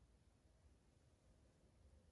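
Near silence: faint room tone with a low steady rumble.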